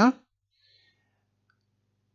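The last of a spoken word right at the start, then near silence with only a faint low buzz in the background of the voice recording.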